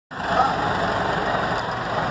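A city bus's diesel engine idling steadily at a stop, with faint voices in the background.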